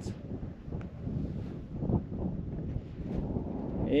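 Wind buffeting the microphone outdoors: an uneven low rumble that rises and falls with the gusts.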